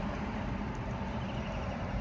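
Steady low hum and hiss inside a parked car's cabin, with no change through the pause.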